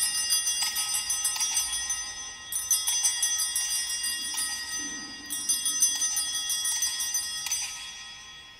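Sanctus bells, a cluster of small altar bells, shaken in three peals about two and a half seconds apart, each ringing on and dying away. They mark the elevation of the chalice at the consecration.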